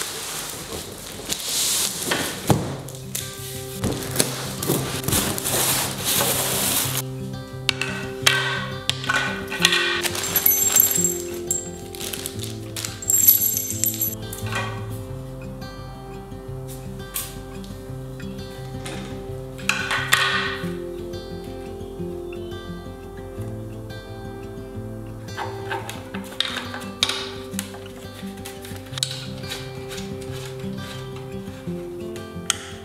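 Background music with a steady, stepped bass line throughout. Under it, a dense rustling of cardboard packaging being opened fills the first several seconds, then scattered clinks and knocks as chair frame parts are handled and fitted together.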